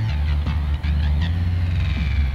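Steady low drone of the C-160 Transall's two Rolls-Royce Tyne turboprop engines and propellers in cruise, heard inside the cockpit.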